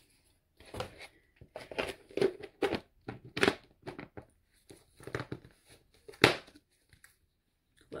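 Plastic packaging crinkling and clattering as it is handled, in a series of short irregular bursts.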